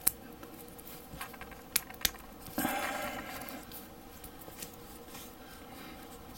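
Small plastic model-kit parts handled and pressed together by hand: a few sharp clicks, the loudest at the very start and two more a little under two seconds in, then a short scraping rustle of plastic and fingers.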